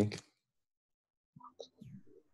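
A man's voice finishing a spoken question, then silence, then brief, faint murmured voice sounds near the end.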